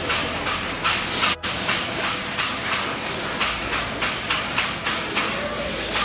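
Metal fabrication workshop noise: a steady hiss with irregular sharp knocks, about two or three a second, typical of sheet metal being hammered and worked.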